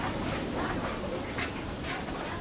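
Steady background noise of a shop floor, with a few faint clicks.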